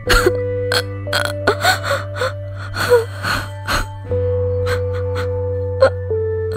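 A woman sobbing in short gasping breaths over a sustained background score of held, droning chords; the music shifts to a new chord about four seconds in and the sobs thin out.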